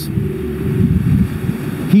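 Low, gusty rumble of wind buffeting the microphone on an ocean beach, with the wash of breaking surf underneath.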